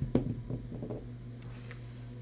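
A large toy die rolled across a wooden tabletop, a few quick knocks in the first half-second as it tumbles, then a faint steady hum.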